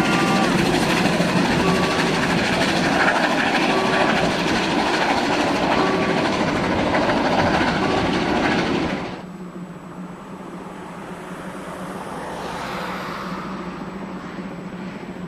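Coaches of a 750 mm narrow-gauge steam train rolling past close by, their wheels running loudly over the rails. About nine seconds in, the sound drops off abruptly to a much quieter low, steady hum.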